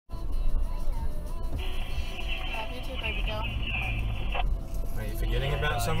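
Steady low engine and road rumble heard inside the cabin of a 2012 Toyota Prado KDJ150 (3.0 L turbodiesel) crawling along a sand track, with music playing over it and a voice near the end.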